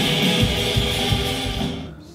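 Loud rock band music: guitar over steady drum hits, fading out near the end.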